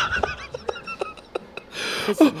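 A man's breathless laughter: a run of short, irregular gasping catches of breath while laughing hard, with a louder breath near the end.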